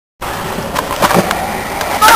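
Skateboard wheels rolling on concrete, with a couple of sharp clacks of the board about a second in, after a brief silence at the start.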